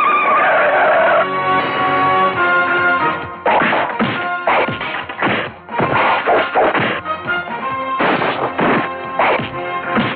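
Action-film fight soundtrack: dramatic background music with a loud crash-like burst in the first second, then a rapid series of punch and impact sound effects about two a second from a few seconds in.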